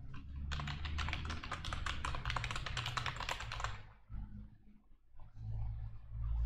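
Fast typing on a computer keyboard, a quick run of key clicks lasting about three seconds that stops about four seconds in, with a low hum underneath.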